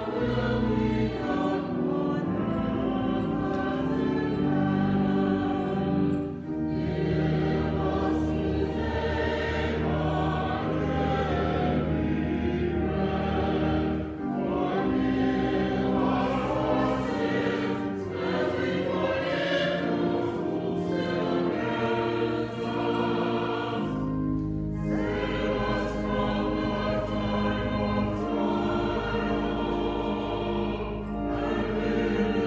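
Choral music: a choir singing slow, sustained phrases over a deep held bass, with short breaths between phrases every several seconds.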